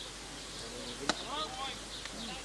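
A single sharp impact of the pitched baseball, about a second in, over faint background voices.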